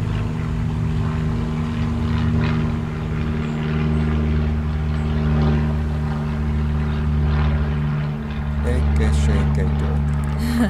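A steady low mechanical hum made of several held low tones, with the lowest tone swelling louder about three and a half seconds in and again near the end.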